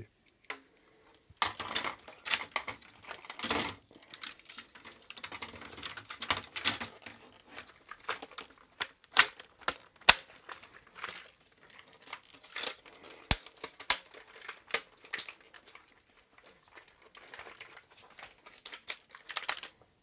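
The Amiga 600's plastic case shell and keyboard being handled and fitted together: irregular plastic clicks, knocks and rattles, with a sharp click about ten seconds in.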